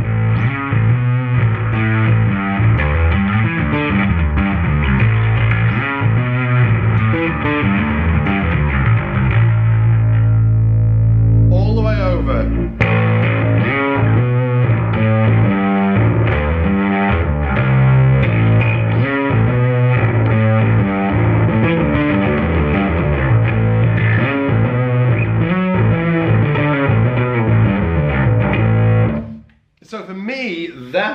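Electric bass riffing through the Omega side of a Darkglass Alpha Omega distortion pedal: a fully distorted, honky tone heavy in the midrange. A long held note comes about a third of the way in, followed by a quick slide, and the playing stops just before the end.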